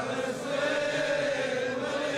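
A man chanting a Shia Muharram lament (nai), holding one long, nearly steady note that echoes in the hall.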